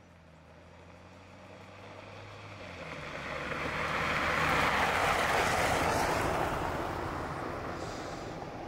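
Jeep Gladiator driving past on a dirt road: engine and BFGoodrich KO2 all-terrain tyres on gravel grow louder as it approaches, are loudest about five seconds in, then fade as it goes by.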